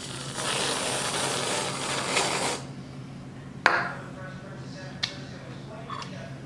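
Aerosol whipped cream can spraying, a steady hiss that cuts off about two and a half seconds in, followed about a second later by a single knock.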